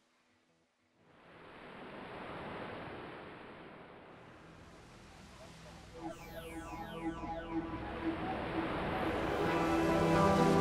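Opening of an instrumental track: after about a second of near silence, a surf-like wash of noise swells up. From about six seconds, falling sweeps and sustained pitched notes come in and the music grows steadily louder.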